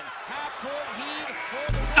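Basketball broadcast sound from the game clip: a voice-like pitched line rising and falling over background music. Crowd noise swells near the end as the final shot drops at the buzzer.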